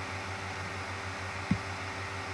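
Steady low electrical hum and hiss of room tone, broken once about one and a half seconds in by a single short, low thump: a click on a MacBook trackpad as the next-page button is pressed.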